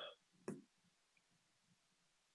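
Near silence with two faint, brief clicks about half a second apart near the start.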